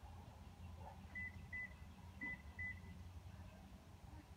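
Four short, high electronic beeps of one pitch, in two pairs about half a second apart, over a faint steady low hum.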